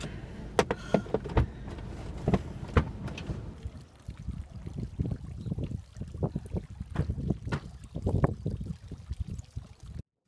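Car doors opening and being shut with knocks and clicks, along with shuffling and footsteps on a concrete driveway.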